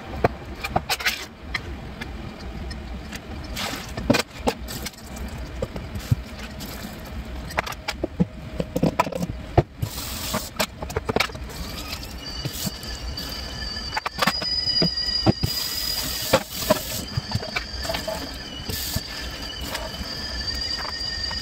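Hand-held metal can opener cutting open tins of canned chicken, a run of sharp irregular clicks and scrapes of metal on metal. From about twelve seconds in, a steady high squeal joins in.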